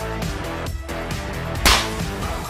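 Background music with a steady beat. Near the end, a single sharp crack cuts in briefly and is the loudest sound.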